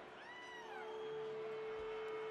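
Lull between songs at an outdoor rock concert: a steady held tone from the stage sound system under faint crowd noise. A single high cry rises and falls briefly near the start of the lull.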